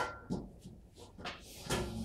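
Several knocks and clunks of handled objects or furniture, the loudest near the start and near the end, the last one running into a short scrape.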